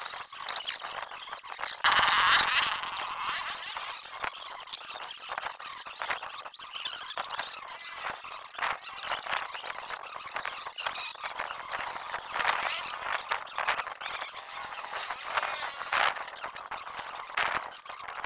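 Hands fitting a replacement motorcycle stator and its wiring into the aluminium magneto cover: irregular small clicks, taps and scraping of metal parts and wire throughout, with no engine running.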